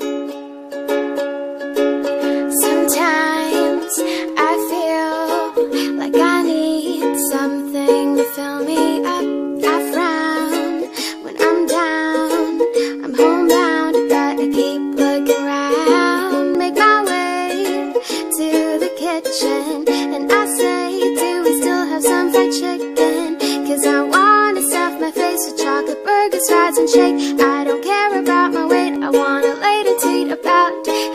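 Background music: a light tune carried by a plucked and strummed string instrument, with a steady chord pattern throughout.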